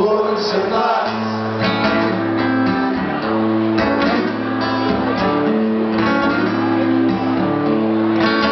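Live band playing an instrumental passage: a guitar strummed over held chord notes, with a low bass note coming in about a second in.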